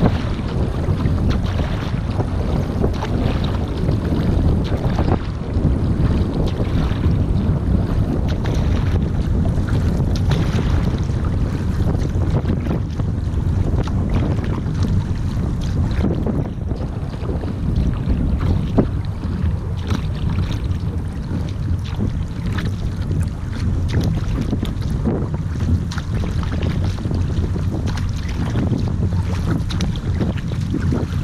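Wind rumbling on a bow-mounted camera microphone over the splash and swish of paddle blades on a surfski being paddled forward, stroke after stroke, with water running along the hull.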